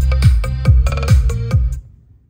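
Electronic dance music with a deep, downward-sweeping kick drum about twice a second, played through an Ashley RXP-215 2x15-inch passive speaker and a ZOOM-218 2x18-inch subwoofer in a sound test. The track drops away near the end.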